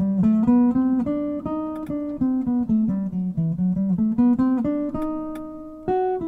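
Archtop jazz guitar playing a single-note line of the bebop harmonic minor scale over a B7 chord, about four plucked notes a second, climbing, falling back and climbing again before settling on a held note near the end.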